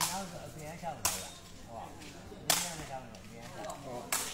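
Sepak takraw ball being kicked, three sharp smacks about a second apart during a rally.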